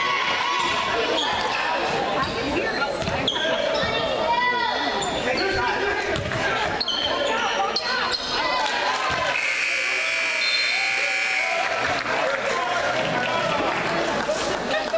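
Basketball bouncing on a hardwood gym floor under spectators' and players' voices; about two-thirds of the way in, the gym scoreboard buzzer sounds a steady tone for about two seconds, marking the end of the third period.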